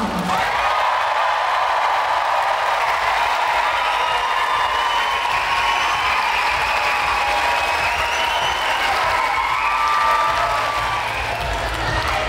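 Large audience applauding steadily, with some cheers and whoops mixed into the clapping.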